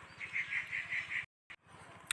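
A small animal or bird calling in the background: a quick run of about seven even, high chirps, roughly seven a second, that stops a little over a second in. The sound then drops out completely for a moment.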